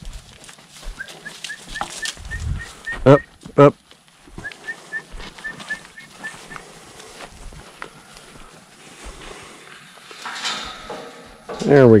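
An animal gives two short, loud calls about half a second apart, with strings of faint, quick, high chirps in the background.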